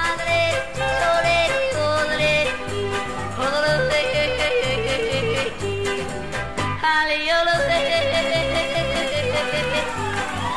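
Yodeling in a country-western song: a voice leaps back and forth between high and low held notes over a bouncing bass accompaniment.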